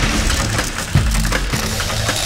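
Loud percussion music: dense, crashing drums and cymbals over a heavy low end, with a sharp hit about a second in.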